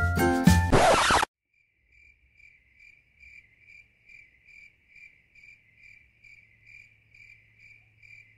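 Music cuts off about a second in after a short rushing noise, then a lone cricket chirps steadily, about two chirps a second: the stock crickets sound effect for an awkward silence.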